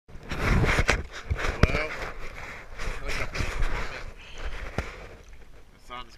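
Open-sea water sloshing and slapping around a GoPro held at the surface, in irregular noisy surges with a low rumble. A few sharp knocks come through, the first about a second in and another near the end.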